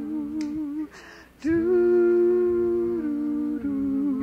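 Backing voices humming long held notes in two-part harmony, pausing briefly about a second in before coming back on a new chord; a couple of soft clicks sit among them.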